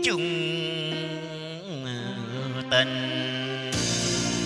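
Vietnamese tân cổ (cải lương-style) singing over a karaoke backing track: a long held, drawn-out vocal syllable with downward slides at the start and again about halfway through. Near the end the backing music grows fuller as the instrumental part comes in.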